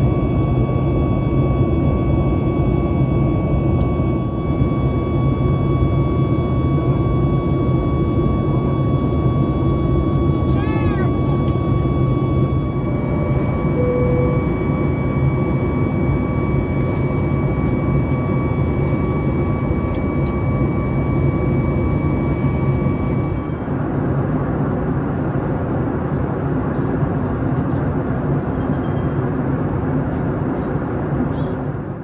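Steady in-flight cabin noise of a Boeing 737 MAX 8 heard from a window seat, a deep drone of its CFM LEAP-1B jet engines and airflow with a thin steady whine over it. The whine stops about three quarters of the way through, and the drone runs on a little changed.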